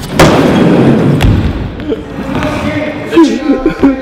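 Skateboard dropping in on a wooden mini ramp: a sharp slap as the wheels land on the ramp, then about a second of loud rolling rumble down the wood with a sharp knock near its end, fading out.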